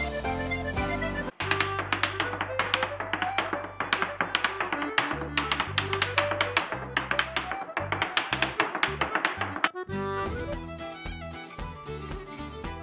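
An Irish dance tune playing, with a rapid run of hard-shoe taps and clicks over it through most of the stretch. The sound cuts off abruptly about a second in and changes again near the end.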